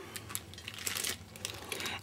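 Clear plastic packaging of cling stamp sets crinkling and rustling as the packages are handled and swapped, a soft run of small irregular crackles.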